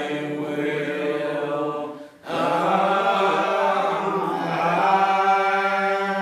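Old Regular Baptist congregation singing a lined-out hymn unaccompanied, in slow, long-drawn notes. There is a brief break for breath about two seconds in.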